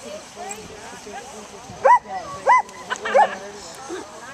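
Small dog barking three times in quick succession, starting about two seconds in, with voices murmuring in the background.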